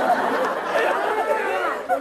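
Several voices talking over one another at once, a jumble of chatter with no single clear speaker.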